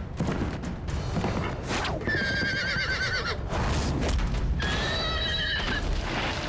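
Horse whinnying twice, each call a wavering, quavering cry lasting about a second, the second starting about four and a half seconds in.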